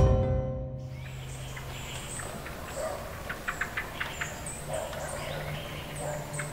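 Birds chirping outdoors: many short, high-pitched calls and quick chirp clusters over a quiet ambient background, after music dies away in the first second.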